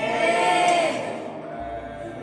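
Raised human voices holding a long, wavering call or chanted note that rises and falls, loudest about half a second in, then trails off more softly.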